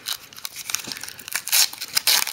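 Shiny foil wrapper of a Panini Crown Royale trading-card pack being torn open and crinkled by hand: a run of sharp crackles, loudest about a second and a half in.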